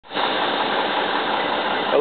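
An engine running steadily with a noisy hiss.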